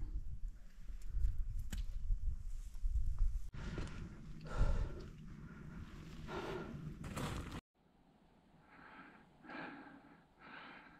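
Heavy, breathy panting of a climber scrambling up steep rock, short of breath, a breath every second or two. Low wind rumble on the microphone is heard at first, and it goes almost quiet near the end.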